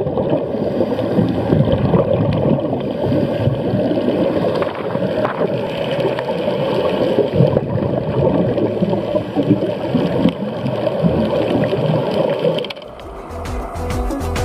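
Muffled underwater rumble with bubbling and gurgling, as heard by a camera underwater near scuba divers. About thirteen seconds in it cuts to background music with a steady beat.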